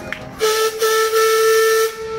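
Steam launch's whistle blown in one steady note for about a second and a half, broken briefly near the start, with the hiss of escaping steam.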